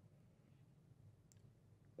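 Near silence: room tone, with one faint click about two-thirds of the way through.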